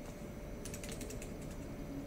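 A quick run of faint clicks and taps about halfway in, from fingers shifting on a ukulele's neck and body, with no notes sounded.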